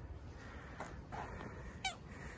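Stray tabby cat giving a short, high meow that falls steeply in pitch near the end, asking for food.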